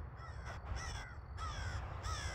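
A crow cawing over and over, short hoarse calls at about three a second, over a steady low rumble.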